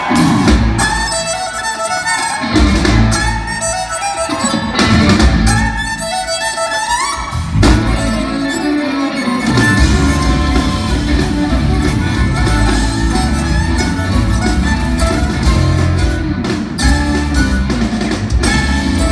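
Southern rock band playing live on stage. Sparse opening licks with rising slides are punctuated by band hits, then the full band with drums and bass comes in about ten seconds in and plays on steadily.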